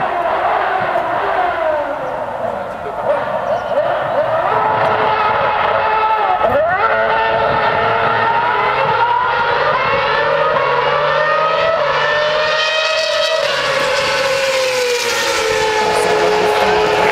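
Several racing cars' engines running at high revs on the circuit, their pitches gliding up and down as they pass and change gear, with one sharp falling-then-rising sweep about six and a half seconds in and engines rising in pitch under acceleration near the end.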